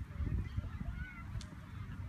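Wind rumbling on the microphone, with faint bird calls and one short click about one and a half seconds in.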